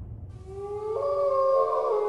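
Wolf howl sound effect: long held tones fade in about a third of a second in and slide slightly up in pitch.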